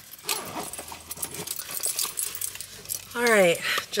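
Keys jingling and clicking as they are handled inside a car, in many small light clicks. About three seconds in, a woman's voice gives a short falling vocal sound.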